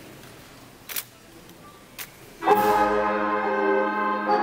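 Two sharp clicks about a second apart, then a youth wind band comes in about two and a half seconds in, holding a loud chord led by brass.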